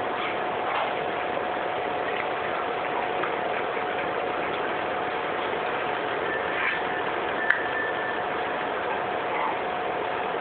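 Steady background hiss with a constant faint hum tone, broken by a few small ticks and one sharp click about seven and a half seconds in.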